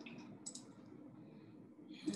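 A couple of faint computer mouse clicks, one at the start and one about half a second in, over quiet room tone.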